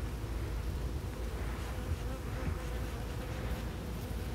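Honey bees buzzing around a hive in a steady, faintly wavering hum.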